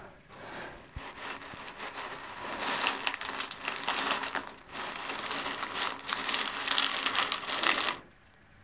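LECA clay pebbles grinding and rattling against each other and the plastic pot as an orchid is worked loose and pulled out: a continuous scratchy clatter of small clicks, with a brief pause about four and a half seconds in.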